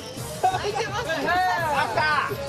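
People's voices talking over background music.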